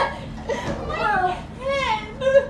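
Short, high-pitched squealing or whining cries that glide up and down in pitch, a few in a row.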